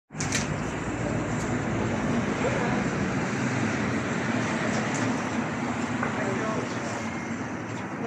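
City street ambience: a steady wash of traffic noise with indistinct voices of people nearby.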